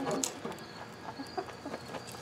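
A few faint, light clicks of metal tongs against charcoal briquettes as they are nudged into place in a smoker's firebox.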